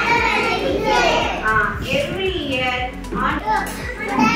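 Young children's voices calling out together in answer, overlapping one another.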